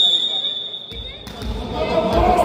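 A referee's whistle blows one steady high note, signalling the serve. As it stops, a volleyball is bounced on the wooden hall floor a few times, each bounce a low thud.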